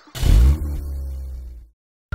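A truck engine sound effect: a deep rumble that starts suddenly, revs and fades out over about a second and a half, then cuts to silence.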